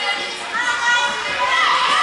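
Overlapping high-pitched voices of girls and spectators calling out and chattering, echoing in a large gym; one voice calls out louder in the second half.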